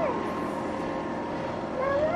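A toddler's high-pitched vocalizing: short, rising, squeal-like calls near the end, over a quiet steady background.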